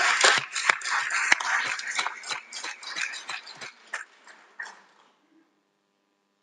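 Applause, dense at first and thinning to a few separate claps before stopping about five seconds in.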